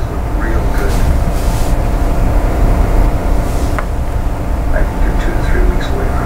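Film soundtrack playing back from a LaserDisc: a steady low rumble with faint, broken dialogue over it.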